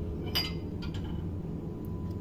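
A drinking glass clinks once, about half a second in, with a brief ring, as it is lifted out of a dishwasher rack.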